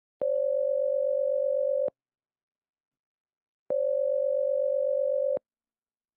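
Telephone ringback tone, the sound of a call ringing out at the other end: two steady rings, each just under two seconds, with a gap of about the same length between them. The tone is pitched up by the sped-up recording.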